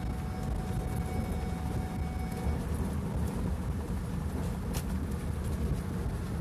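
Steady engine and road noise heard inside a moving vehicle's cabin at highway speed, mostly a low rumble, with a single sharp click near the end.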